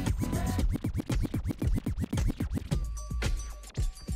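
Dance music mixed live with a burst of DJ scratching, rapid back-and-forth strokes lasting about two seconds from just under a second in, after which the track plays on.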